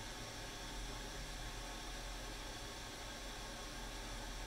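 Steady low hum and hiss of room noise, with no distinct events.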